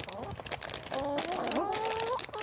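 Chickens calling with drawn-out, held notes starting about a second in, over a rapid patter of pecking and scratching clicks.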